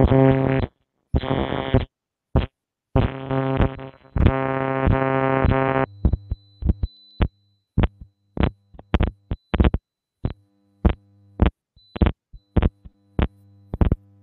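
Harsh electronic buzz of interference from a faulty headset connection on a video call, which the host thinks comes from the panellist's headset. A steady buzzing tone cuts in and out in chunks, then about six seconds in breaks up into rapid clicks and crackles over a low hum.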